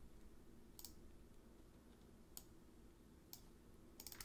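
Near silence: room tone with three faint, short clicks spread about a second apart, from computer input.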